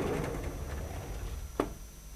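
Low, steady room noise that fades away, with a single short sharp knock about one and a half seconds in.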